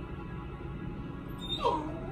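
Background pop music playing quietly. Near the end a short gliding call falls and then rises in pitch.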